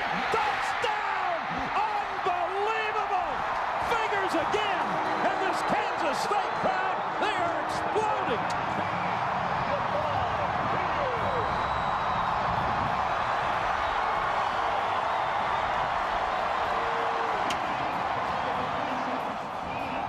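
Stadium crowd cheering a long touchdown pass, swelling into a loud, steady roar of voices with individual shouts rising out of it and scattered sharp claps.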